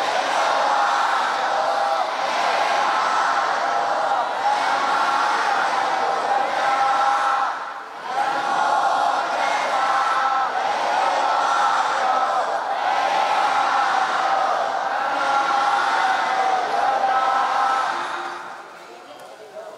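Voices chanting in unison over a PA system, on long held pitches, with one short break about eight seconds in.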